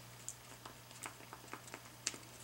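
Faint, soft taps and clicks of fingers pressing paper clay onto a papier-mâché wing on a tabletop, scattered irregularly, over a low steady electrical hum.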